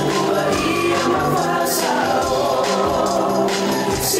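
Island dance song: voices singing together over music with a steady beat.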